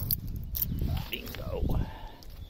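A key and its keyring clicking in the cylinder lock of a canal swing bridge's locking mechanism, two sharp clicks in the first half second, with a voice faintly heard near the end.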